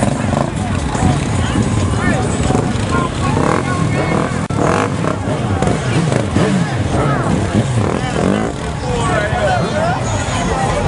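Motorcycle and ATV engines running at low revs, with many people's voices talking and calling out over them.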